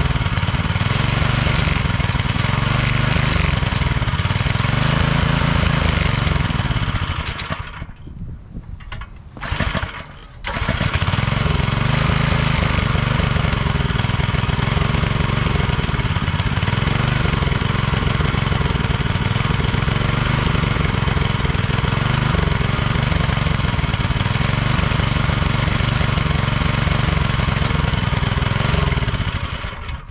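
Small single-cylinder gasoline engine of a pressure washer running steadily. It dies out about a quarter of the way in, catches again with a brief burst, then runs steadily until it is shut off near the end. The engine doesn't like coming off choke.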